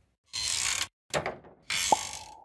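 Cartoon sound effects: three short hissing, clattering bursts of noise, the first about half a second long. Near the end comes a brief pitched blip.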